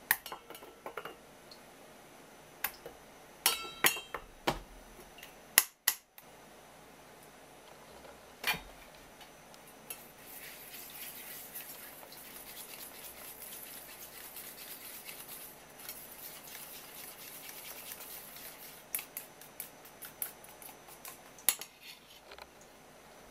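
Metal knocks and clinks against a stainless steel bowl, one ringing briefly, then a wire whisk beating miso with vinegar in the bowl: a steady scratchy swishing for about ten seconds, followed by a few taps.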